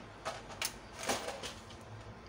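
A few sharp clicks of the rocker switches on a lamp-bank load being flipped to add load to the inverter under test.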